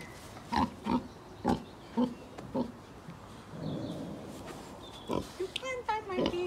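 Pig grunting in short, regular grunts about two a second, then a softer low sound and a few more grunts near the end.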